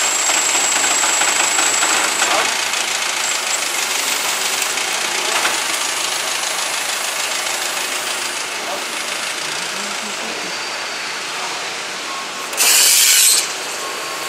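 Forklift engine running as the truck pulls away, slowly fading, with a thin high tone for the first two seconds. A short loud hiss comes about a second before the end.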